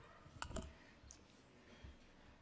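A few faint clicks and knocks over near silence: two close together about half a second in, and a lighter one near the end.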